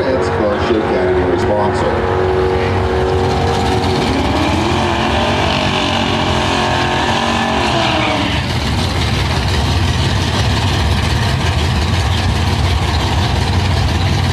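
Drag-racing Buick Regal doing a burnout: its engine is held at high revs with the rear tyres spinning, the pitch rising and then falling away about eight seconds in. A loud, steady low engine rumble follows as the cars sit near the starting line.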